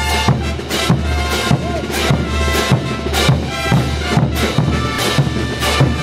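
Bolivian brass band playing dance music live, with sustained horn tones over a steady beat of drum and cymbal strokes, a little under two a second.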